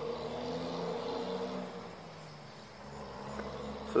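A steady, low mechanical hum made of several held tones, like an engine or motor running. It grows slightly quieter past the middle and then comes back up.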